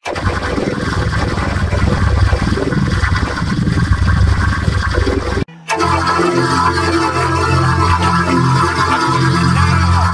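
Heavily effect-processed, distorted audio: a dense, noisy, churning texture, then a brief dropout about five and a half seconds in, after which a loud steady chord-like drone holds to the end.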